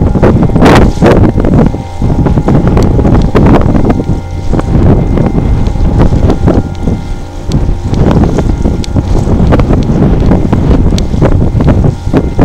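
Wind buffeting the camera microphone: a loud, irregular low rumble that swells and dips in gusts, with a faint steady hum behind it.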